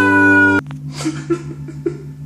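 A man's loud, wailing held note over music, cut off abruptly about half a second in; then a low steady hum with a few faint clicks.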